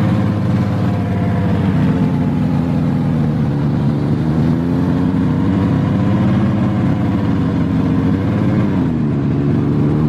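Aktiv Panther snowmobile engine running under way, close up from the handlebars, its pitch easing down a little about three seconds in and again near the end, then picking up as the throttle is opened again.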